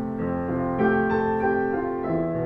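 Yamaha Clavinova CLP-430 digital piano playing its piano voice, with both hands on a slow passage of sustained chords. New notes and chords are struck about every half second over the ringing ones.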